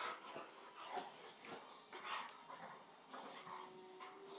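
A bulldog making short, irregular breathy noises and faint whimpers as it squirms on its back on a carpet.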